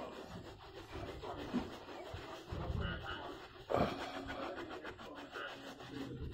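A cloth towel rubbing over a plastic car headlamp lens in irregular scrubbing strokes, wiping off leftover window-tint glue, with one louder rub about four seconds in.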